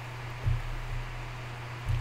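Steady low electrical hum and hiss from the recording microphone, broken by two short dull thumps, one about half a second in and one near the end.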